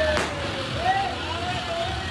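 Ground fountain firework hissing steadily as it sprays a column of sparks, with one sharp crack just after it begins and crowd voices around it.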